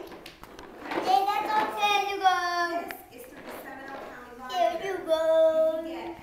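A child singing in long, held high notes: one phrase from about a second in, and another near the end.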